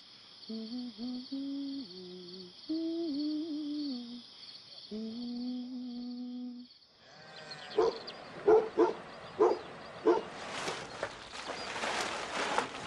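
A person humming a slow, wordless tune in long held notes over crickets chirping steadily. About seven seconds in this stops, and a series of sharp wooden knocks and clatter follows as furniture is handled and loaded onto a truck; these are the loudest sounds.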